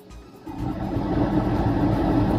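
A motor vehicle's engine running close by as it passes, swelling in about half a second in and then holding steady.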